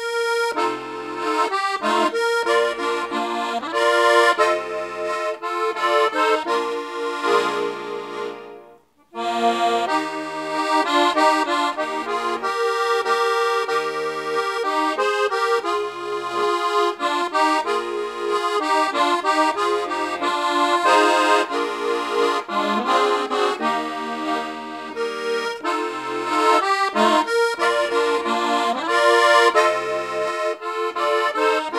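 Hohner Morino piano accordion playing a song melody on the treble keys over left-hand bass-button notes. The playing stops briefly about nine seconds in, then resumes.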